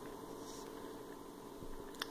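Faint room tone: a steady low hiss with a faint hum, and no distinct event.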